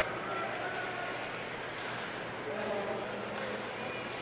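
Quiet ice-hockey arena ambience during play: a low, even crowd murmur, with a faint voice about two and a half seconds in.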